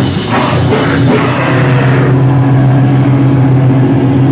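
A hardcore band plays live and loud, with drums, cymbals and distorted amplified guitars. About a second and a half in, the drums and cymbals drop out, leaving one low amplified note ringing steadily.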